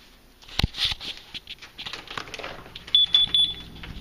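Handling and movement noises in the dark, with a sharp click about half a second in. About three seconds in comes a quick run of four or five short, high electronic beeps, and a low steady hum starts around the same time.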